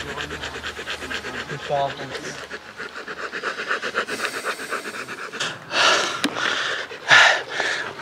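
A dog panting rapidly close to the microphone, about six quick breaths a second, giving way near the end to a few longer breathy rushes.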